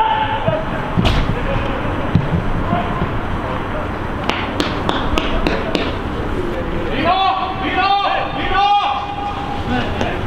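Football players shouting on the pitch, with long drawn-out calls about seven to nine seconds in. A single sharp thud of a ball being kicked comes about a second in, and a few sharp clicks come around the middle.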